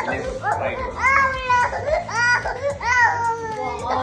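Toddler crying: a few short sobs, then three drawn-out wails about a second apart, each rising sharply in pitch and then falling away.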